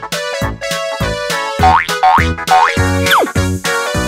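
Bouncy, playful background music of quick plucked notes, with three rising boing-like swoops and then one falling slide in the second half.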